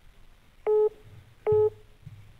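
Two short electronic telephone-line beeps, less than a second apart, each a steady tone with overtones.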